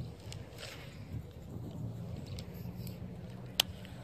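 Quiet handling sounds of a baitcasting rod and reel being cast, over a low steady rumble, with a single sharp click near the end.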